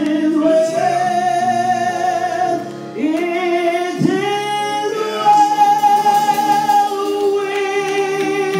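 A woman singing a slow gospel song into a handheld microphone over the church sound system, holding long notes that scoop up in pitch at the start of each phrase.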